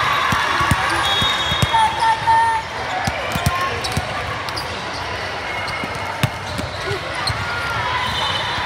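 Volleyballs thudding irregularly on the floor and against hands across a busy multi-court hall, with brief high squeaks of sneakers on the sport-court flooring, over a steady babble of crowd voices.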